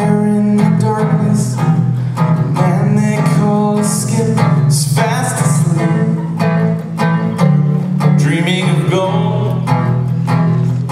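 Live song: an acoustic guitar strummed in a steady rhythm, with voices singing over it.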